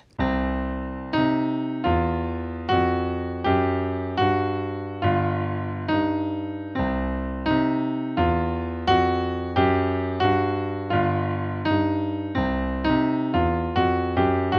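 Digital piano playing a boogie-woogie left-hand pattern in C (octave, third, fourth, sharp fourth, fifth) together with a C blues pentascale in the right hand, in even eighth notes played straight rather than swung.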